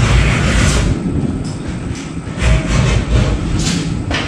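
Caster wheels of a wooden jet-ski dolly rolling and scraping over a concrete floor, a heavy rumble with knocks that eases off midway and then picks up again.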